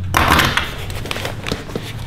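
Veto Pro Pac fabric tool bag being handled and turned on a workbench: a loud scraping rustle in the first half-second, then lighter rustles and small clicks as the bag and its tools shift.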